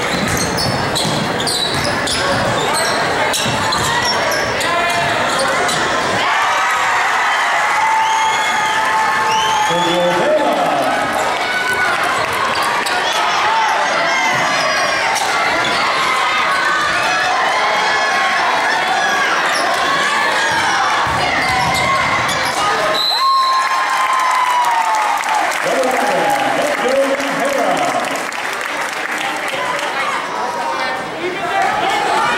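Live high school basketball in a gym: the ball dribbling on the hardwood court, sneakers squeaking, and players and spectators shouting and chattering, all echoing in the large hall.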